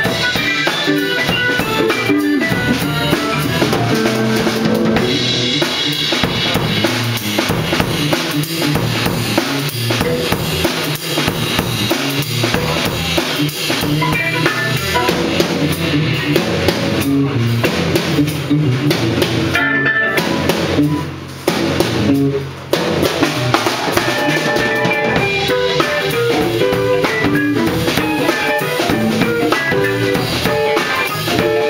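Live instrumental jazz-funk by a band of drum kit, electric bass, electric guitar and keyboard, with the drums prominent. The band drops out for two short stops about two-thirds of the way through before coming back in.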